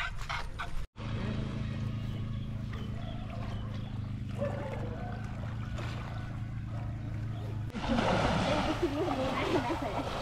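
Indistinct voices over a steady low hum, with the voices growing louder and closer near the end.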